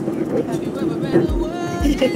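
Steady airliner cabin drone with faint voices. A little over a second in, music comes in with a deep bass beat about twice a second and a wavering sung or played melody.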